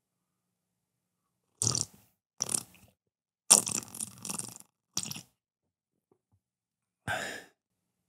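A man drinking from a cup close to a microphone: five short sips and breaths, the longest about three and a half seconds in, with silence between them.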